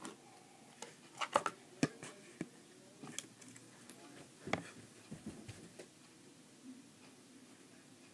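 Scattered light knocks, clicks and thumps of a child moving about a small room right after setting the camera down: handling bumps near the microphone and footsteps, with a cluster a little over a second in and a few heavier thumps around the middle.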